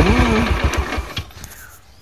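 Yamaha Sirius 110cc single-cylinder four-stroke engine idling with an even pulse, with a noise that the owner puts down to a bearing. About a second in the engine cuts off and dies away.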